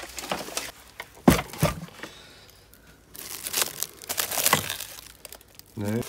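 Plastic wrap crinkling as hands rummage through a plastic crate of wrapped china, with two sharp knocks about a second in.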